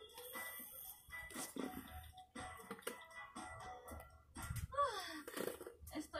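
Faint music from a television show playing in the room, with a short vocal sound falling in pitch near the end.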